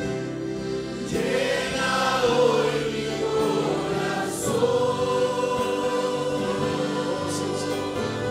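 A church congregation singing a slow Spanish worship chorus together, with long held notes.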